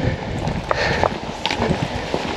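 Footsteps walking on a paved lane: a few irregular soft steps and scuffs over a low rumble.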